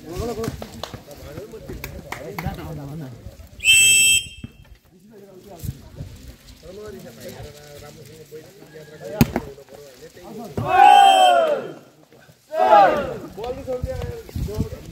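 A referee's whistle blown once, short and shrill, about four seconds in during a volleyball rally. A single sharp smack follows at about nine seconds, then two loud shouts near the end over ongoing chatter.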